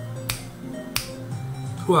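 Fingers snapping twice, two sharp single clicks about two-thirds of a second apart.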